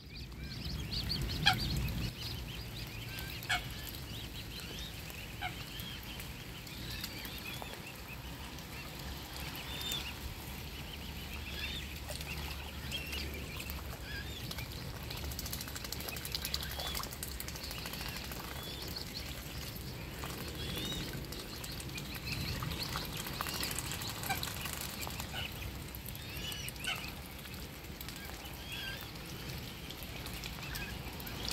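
Mute swan cygnets peeping over and over, short high chirping calls, as the brood dabbles and feeds in the water. A few sharp clicks come in the first few seconds.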